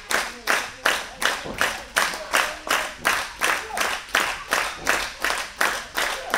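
Audience clapping in unison in a steady rhythm, a little under three claps a second.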